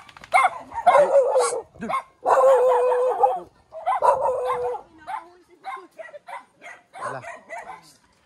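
Dogs barking and yipping in a run of repeated barks, with longer calls in the first half and a quick string of short barks in the second.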